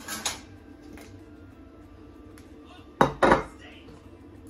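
Kitchen knife and ceramic plate being handled at a wooden cutting board: a short clatter right at the start, then two sharp knocks about three seconds in.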